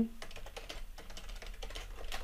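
Computer keyboard typing: a quick, soft run of keystrokes.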